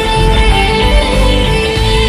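A Hindi pop song in an 8D audio mix, here an instrumental stretch with plucked guitar over a steady bass.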